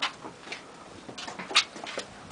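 Footsteps and scuffs of people climbing a narrow stone stairway: a few irregular short sounds, the loudest about one and a half seconds in.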